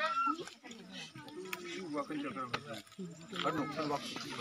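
Voices of people and children at a gathering, talking and calling out, including a couple of short rising-and-falling calls near the start and near the end, with a few light clicks and knocks.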